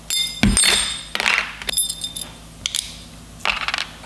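Split-ring pliers working the steel split ring and hook off a metal fishing spoon: a few metallic clinks that ring briefly, with scraping and small ticks between them.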